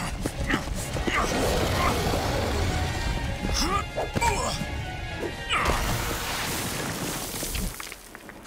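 Cartoon action soundtrack: dramatic music mixed with rain, a low rumble and short wordless cries and growls. It cuts off abruptly near the end.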